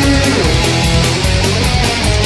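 Loud psychobilly rock band playing an instrumental passage with no vocals: electric guitar and bass over drums, with cymbals struck in a steady, even rhythm.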